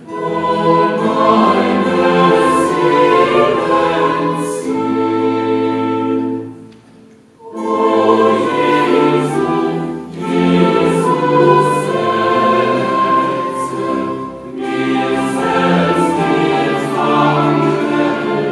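A group of voices singing in held, sustained chords, phrase after phrase, with a pause of about a second near the middle.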